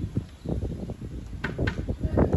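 Wind buffeting the microphone, an uneven low rumble, with two light clicks about one and a half seconds in.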